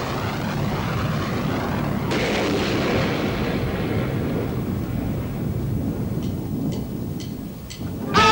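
A thunder-like wash of electronic stage-effect noise, with a rush that sweeps down in pitch, starting afresh about two seconds in. Near the end come four evenly spaced count-in clicks from the drummer, about two a second.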